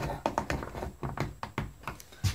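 Light wooden taps and clicks, about ten in two seconds, as a hand grips and works a hardwood peg screwed to a plywood bed board.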